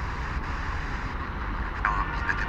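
Sony Ericsson phone's FM radio hissing with static as it is tuned across empty frequencies between stations. Near the end a station's signal begins to break through the hiss.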